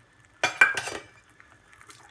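Metal spoon clinking and scraping against a metal pressure cooker pan while stirring thick carrot halwa, with one sharp clatter about half a second in.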